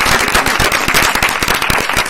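A small audience applauding: a dense, steady run of many separate hand claps.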